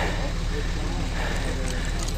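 Faint murmur of people's voices over a steady low hum.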